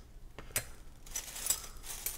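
Small plastic game figurines clicking against each other as they are handled, with two sharp clicks about half a second in, followed by tissue paper crinkling around them.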